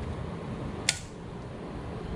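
A single sharp click about a second in, over steady low background noise: the toggle of a newly installed Eaton combination AFCI/GFCI circuit breaker being switched on.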